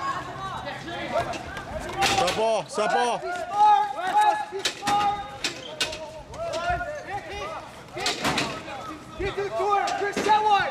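Overlapping shouts and calls from box lacrosse players and onlookers, with sharp knocks about two seconds in and again around eight seconds in.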